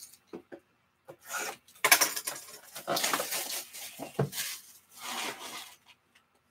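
Plastic shrink-wrap crinkling and tearing as it is stripped off a sealed box of trading cards, in a run of rough rustling bursts. The cardboard box knocks on the table twice, about half a second in and again a little past four seconds.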